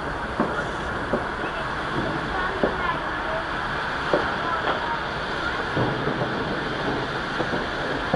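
Distant New Year's Eve fireworks: scattered faint bangs and pops over a steady background noise.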